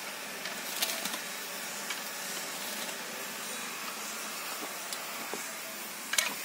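Steady background hiss, with a faint click about a second in and another near the end; no strokes of the weeding tool are heard.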